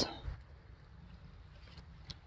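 Quiet outdoor background with a faint, steady low rumble, after a spoken word trails off at the very start; a faint tick near the end.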